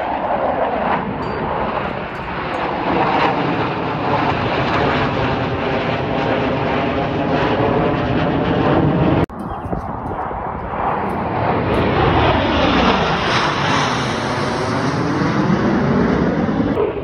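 Jet engine noise from a four-ship formation of Blue Angels F/A-18 Super Hornets flying overhead: a loud, continuous rumble and roar, with a brief dip about nine seconds in, then the tone sweeping as the jets pass.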